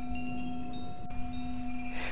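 Soft chime tones ringing out one after another over a steady drone, as ambient background music.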